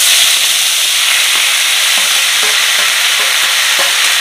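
Chopped fiddlehead fern greens, potato and tomato tipped into hot oil in a wok, sizzling loudly and steadily, with a few faint clicks of utensils.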